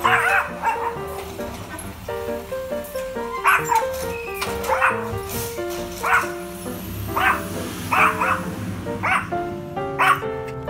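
Yorkshire terrier barking at a garbage truck, short sharp barks roughly once a second over background music, with a gap of about three seconds early on.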